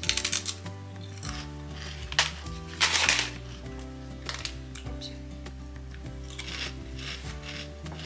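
Chickpea chips crunching as they are bitten and chewed, in short crackly bursts, the loudest about three seconds in, over background music with steady held notes.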